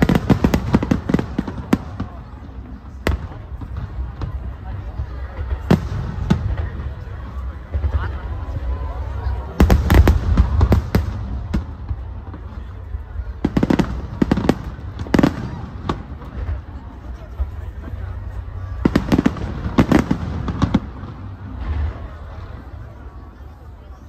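Aerial firework shells bursting in volleys of sharp, rapid bangs: a cluster at the start, single bangs a few seconds in, then heavier volleys about ten seconds in, around fourteen seconds, and near the end. A steady low rumble runs underneath.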